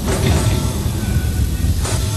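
HAL Dhruv helicopter flying close by: a steady rumble of rotor and turbine engine with a hiss above it.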